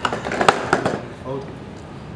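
A few sharp knocks or clatters in the first second, the loudest about half a second in, followed by a brief snatch of speech in Dutch.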